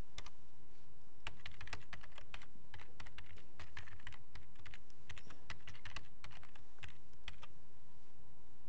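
Typing on a computer keyboard: an irregular run of keystrokes, some in quick clusters, stopping near the end.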